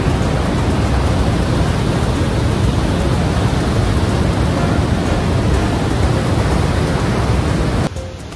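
Steady rush of Niagara Falls and the river rapids just above it, heavy in the low end, cutting off abruptly near the end.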